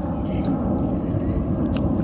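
Wind rumbling steadily against the microphone.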